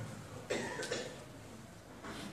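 A single short cough about half a second into a pause in the speech, fading quickly.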